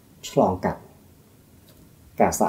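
A man's voice speaking a short phrase of a sermon in Khmer about half a second in, then a pause with only quiet room tone.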